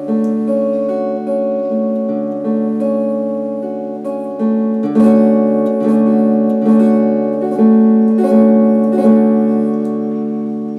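Electric guitar chords strummed with a pick, each chord ringing on and struck again about every second, the strokes louder and sharper from about halfway through.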